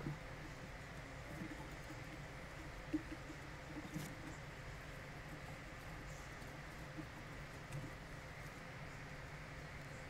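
Faint scratching and a few soft clicks of a hand screwdriver driving a small machine screw through a plastic motor bracket, over a steady low room hum.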